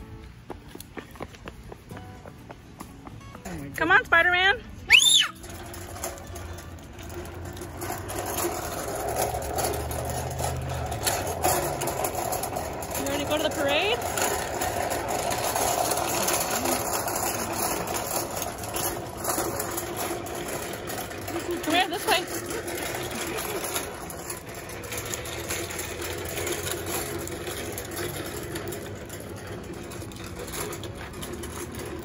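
Small toy wagon's wheels rolling and rattling over a concrete sidewalk as it is pulled along. There are two short, loud, high-pitched cries about four and five seconds in.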